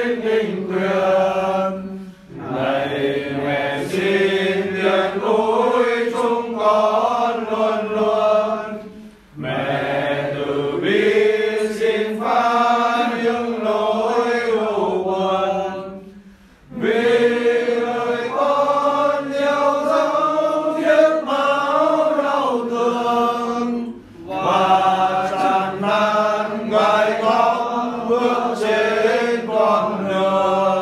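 Catholic prayer sung in Vietnamese as a slow chant. It comes in long held phrases of about seven seconds each, with short breaks between them.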